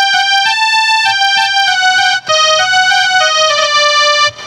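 Casio SA-21 mini keyboard playing a melody of held single notes that step up and down between pitches, with a short break just past the halfway point and lower notes near the end. It is the instrumental phrase of a Hindi film song, played note by note as a lesson.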